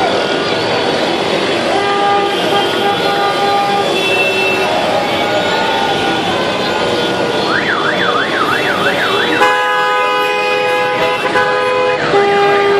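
Celebratory honking from many car horns at once, several held tones sounding together. About two-thirds of the way in, a siren-style horn warbles quickly up and down for about two seconds, then a thicker blast of many horns held together follows.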